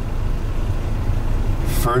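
Steady low rumble of a car idling, heard inside the cabin, with a spoken word near the end.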